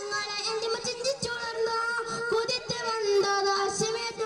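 A boy singing a devotional song solo into a microphone, holding long, slightly wavering notes that step down in pitch about three seconds in.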